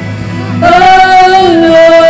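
Live worship song: female vocalists come in strongly about half a second in and hold long sung notes over a band accompaniment.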